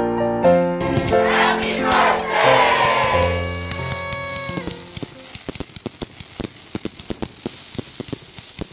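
Music with held chords that stops about halfway through, followed by fireworks going off: a rapid, irregular run of sharp bangs and crackles.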